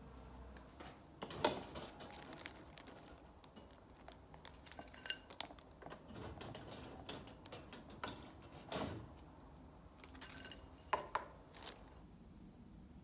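Wooden chopsticks clicking and knocking against a toaster and a plate as toast is lifted out and set down. Scattered sharp clicks throughout, the loudest about a second and a half in and again near the end.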